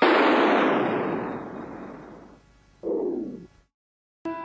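An explosion-like burst of noise closing a hip-hop track, fading away over about two and a half seconds, followed by a short downward swoosh about three seconds in and then a brief silence before the next track.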